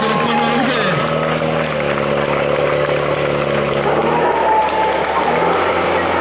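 Portable fire pump's engine running steadily at high speed, its pitch dipping briefly about a second in.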